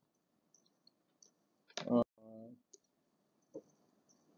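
A few faint, sparse clicks, with a sharper single click about two seconds in.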